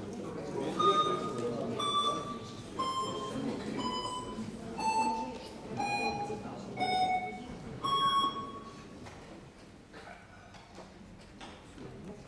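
Electronic voting system's timer beeping about once a second while a vote is open: seven short tones, each a step lower in pitch, then a higher eighth tone about eight seconds in. Under it is a low murmur of voices in a large hall.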